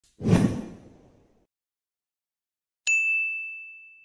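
Logo intro sound effects: a low, noisy hit that dies away within a second, then, near three seconds in, a single bright ding that rings on and slowly fades.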